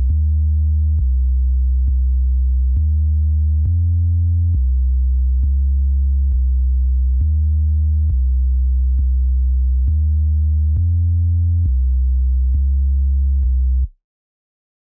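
Soloed synth sub-bass, a near-pure sine tone stepping between a few low notes about once a second in a repeating loop, with a faint click at each note change. It cuts off just before the end.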